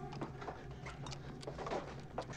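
Movie soundtrack: a steady low hum with scattered short clicks and knocks.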